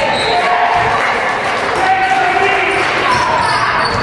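A basketball bouncing on a hardwood gym floor, with indistinct voices of players and spectators calling out, echoing in a large hall.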